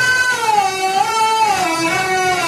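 A drawn-out sung phrase from a Telugu padyam (verse), held on a vowel with its pitch sliding smoothly up and down in a raga line, rising near the start, falling around the middle and dipping again near the end.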